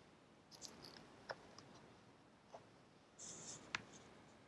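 Page of a picture book being turned by hand, faint: a few soft paper clicks and taps, then a brief rustle of paper sliding a little after three seconds in.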